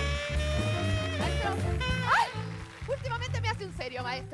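Live band music with a steady bass and drum bed, with a woman's voice over it: a long held note at first, then a rising whoop about two seconds in, then excited talking or exclaiming.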